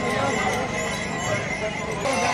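Bullock-cart procession: many crowd voices over the jingling of bells on the draught bulls and the clop of their hooves on a dirt road.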